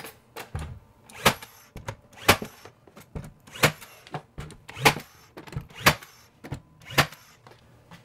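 Cordless 18-gauge brad nailer firing brads through a wooden furring strip into a stud: about six sharp shots, roughly one a second, with fainter knocks of the tool being moved along the strip between them.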